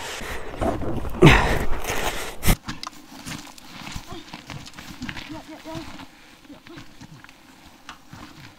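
Wordless voice sounds from the riders, then a single sharp knock about two and a half seconds in, followed by quieter shuffling and footsteps on gravel.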